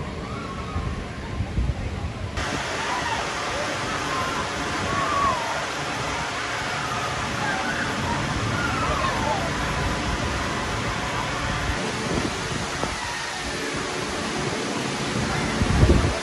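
Suspended steel roller coaster train running along its track: a steady rushing roar, with riders' voices and shrieks faintly over it.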